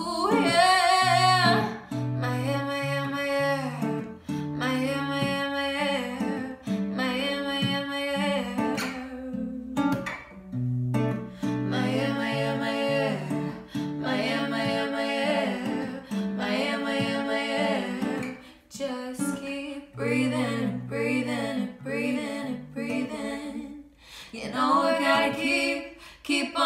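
Acoustic guitar accompanying female singing of a pop song, the vocal phrases separated by short breaths.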